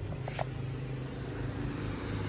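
A motor vehicle on the street, heard as a steady low engine hum that grows louder near the end as it approaches.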